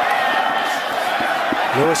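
Steady noise of a large football stadium crowd during a live play, heard under the broadcast audio.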